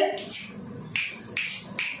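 A few short, sharp snaps from hands, about one every half second, under faint voices.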